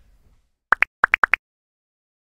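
Outro sound effect of six short, pitched blips in quick succession, alternating a lower and a higher note: a pair, then four more.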